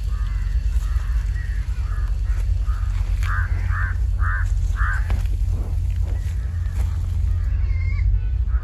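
A bird calling outdoors: a few fainter calls at first, then four short calls about half a second apart around the middle, over a steady low rumble.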